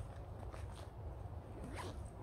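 A backpack zip being pulled in short strokes, the longest near the end, over a steady low rumble.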